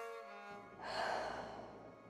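A long clearing breath exhaled audibly, swelling about a second in and fading away. It plays over soft background music with held notes.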